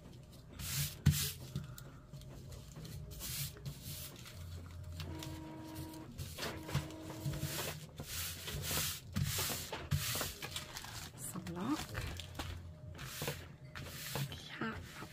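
Cloth rustling and brushing as hands fold, smooth and shift a large piece of cotton fabric on a cutting mat, in a string of short handling noises. A steady hum sounds twice in the background a little before the middle.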